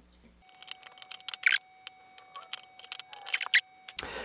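Light handling sounds of a cord being tied around a small cardboard rocket body tube: scattered small clicks and rustles, with two louder rustles about a second and a half in and near the end.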